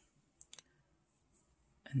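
Two or three faint, brief clicks about half a second in, then near quiet until a spoken word near the end.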